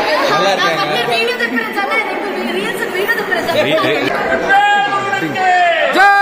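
Several women chattering excitedly over one another, then one high voice holding a long call for the last second and a half, its pitch falling away at the end.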